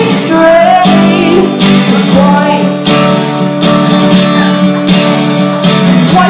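Acoustic guitar strummed in a steady rhythm, with a woman singing over it.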